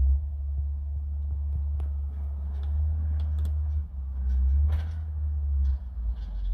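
Low, steady engine rumble heard inside a car cabin, with a few faint clicks.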